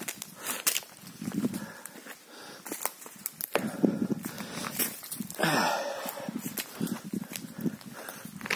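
Footsteps crunching over dry leaves and twigs on mossy ground, in irregular steps. A louder, unidentified sound lasting under a second comes about five and a half seconds in.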